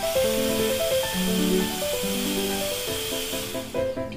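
Corded electric hand drill running and boring into a green bamboo pole, a steady high-pitched whirring hiss that fades out near the end, heard over background piano music.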